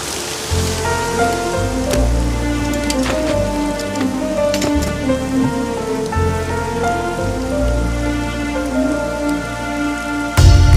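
Heavy rain falling steadily, mixed with a slow film background score: a sustained melody over deep bass notes that change about once a second.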